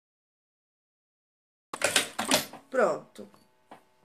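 Dead silence for almost two seconds, then a short run of sharp clicks and clatter from work being handled at a sewing table, with a brief falling vocal sound in the middle.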